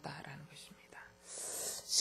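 A pause in a woman's speech: a trailing syllable at the start, then near quiet, and a soft breathy hiss in the last half second before she speaks again.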